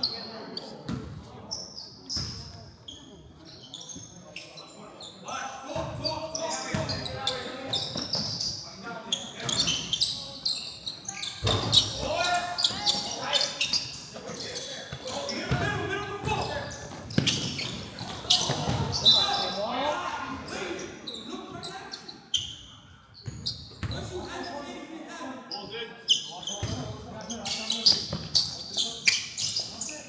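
A basketball dribbled on a hardwood gym floor during play, with players' and coaches' voices echoing around the hall.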